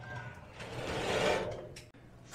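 Marvel Mystery Oil pouring from a plastic gallon jug through a funnel into a cylinder of a stuck engine, a rush of liquid that swells about half a second in and fades after about a second.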